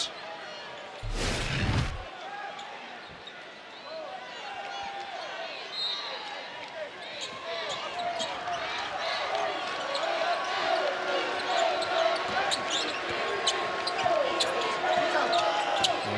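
A broadcast transition whoosh about a second in, then arena crowd noise building steadily, with crowd voices and a basketball bouncing on the court.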